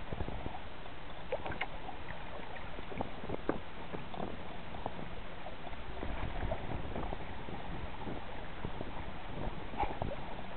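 Sea water rushing and splashing against a kayak's hull as the kayak is pulled along by a hooked hammerhead shark, with many small irregular splashes.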